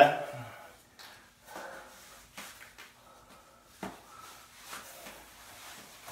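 Blueseventy Helix neoprene wetsuit being tugged and worked up the arm into the shoulder: faint, intermittent rubbing and rustling of the rubber, with a brief sharp snap a little before four seconds in.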